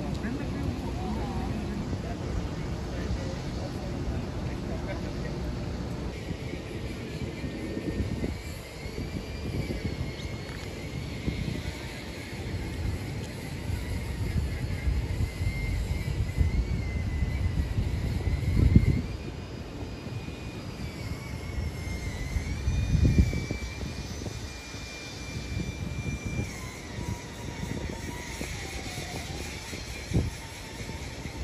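Indistinct voices of people in the open over a steady low rumble, with two louder surges of the rumble in the second half.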